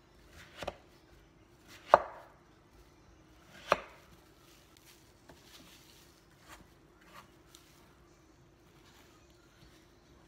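Kitchen knife slicing through cantaloupe and striking a wooden cutting board: three sharp knocks in the first four seconds, then lighter taps of the blade on the board.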